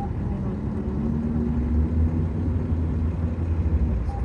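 A motor vehicle's engine running steadily nearby: a continuous low hum and rumble.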